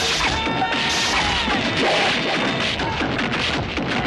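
Film fight-scene sound effects: a continuous, dense run of blows and crashes from a stick fight, laid over background music.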